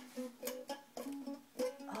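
Small red ukulele strummed unevenly by a baby: about half a dozen irregular strums whose strings ring briefly between strokes.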